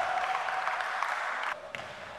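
Applause and scattered clapping echoing in an indoor gym, cutting off suddenly about a second and a half in.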